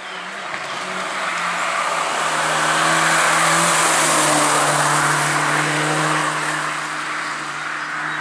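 Suzuki Swift rally car passing at speed on a wet tarmac stage. The engine note holds steady under load with a rush of tyre and road noise, growing to loudest about halfway through as the car goes by close, then fading as it pulls away into the next bend.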